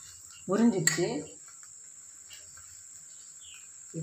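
A short murmured word about half a second in, then quiet room tone under a steady, thin, high-pitched cricket-like whine, with a few faint light scrapes.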